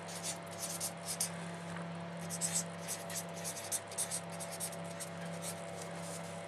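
Handwriting: short, irregular scratching strokes of a pen, over a steady low hum.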